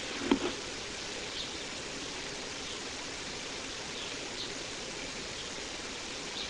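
Steady, even background hiss of the recording's ambient noise, with a brief short sound just after the start and a few faint high chirps.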